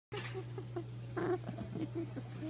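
Pet rabbit honking: a run of short, soft honks several times a second, the loudest about a second in. A sign of excitement and happiness, as the owner reads it.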